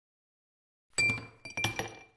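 Sound-effect logo sting of ice cubes clinking against glass: one sharp, ringing clink about a second in, then a quick cluster of lighter clinks.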